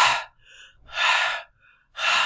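A man breathing forcefully and deliberately in and out, close to the microphone, about one loud breath a second. It is a demonstration of voluntary (cortical) control of breathing.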